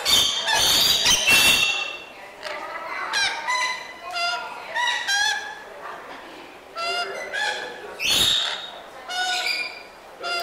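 Rainbow lorikeets screeching and chattering: a run of short, shrill calls, with loud, harsh screeches at the start and again about eight seconds in.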